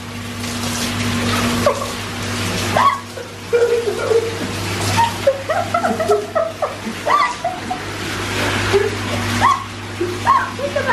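Whirlpool jet bath running: the pump hums steadily while the jets churn and splash the bathwater, which is still shallow in the tub.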